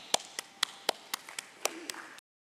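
Slow, even applause: separate hand claps at about four a second.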